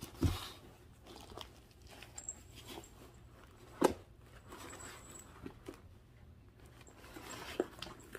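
Plastic zip-top seed bags and paper seed packets crinkling and rustling in a cardboard box as a cat climbs in and noses among them, with scattered small knocks; the sharpest knock comes about four seconds in and another near the end.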